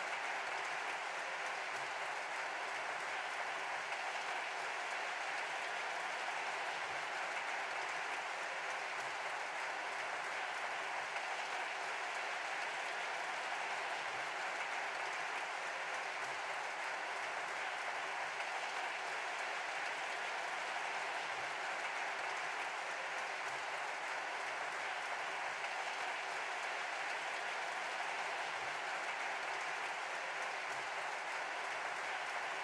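Audience applauding, a steady and sustained round of clapping that does not let up.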